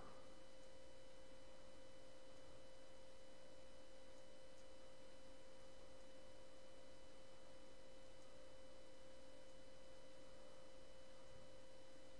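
Faint steady tone in the mid range, with fainter higher overtones, over low hiss: the background noise of the recording, with no other event.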